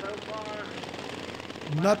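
Racing lawn mowers' governed single-cylinder engines running as a steady drone in the background, with a faint voice in the first half second.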